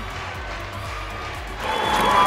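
Background music over arena crowd noise, the crowd's cheering swelling up about a second and a half in.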